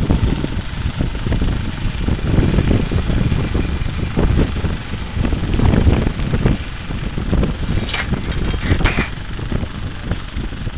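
Wind buffeting the microphone in an uneven, gusting rumble, with a couple of short clicks near the end.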